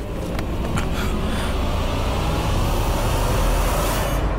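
A dramatic sound-effect swell for a TV drama: a rush of hiss over a deep rumble that builds for about three seconds and drops away, with a few sharp hits near the start.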